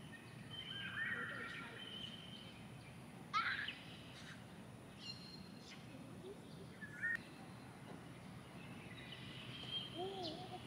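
Birds chirping against steady outdoor background noise, with the loudest call, a quick sweeping trill, about three and a half seconds in and a shorter call near seven seconds.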